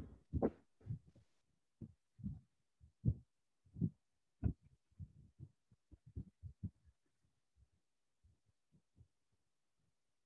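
Irregular muffled low thumps with dead silence between them, coming thick in the first few seconds and thinning out toward the end.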